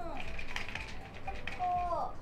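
A young woman talking in a high-pitched, sing-song voice.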